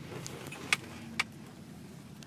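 Low background noise with two brief, sharp clicks about half a second apart near the middle.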